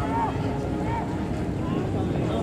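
Spectators' voices calling out briefly, a couple of short shouts, over a steady low rumble of wind on the microphone.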